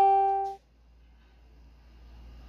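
A single sustained musical note, ringing with many overtones and slowly fading, cut off abruptly about half a second in; after it, only faint room tone.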